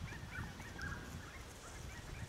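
Birds calling: a quick, continuous run of short, repeated chirping calls, over a low rumble.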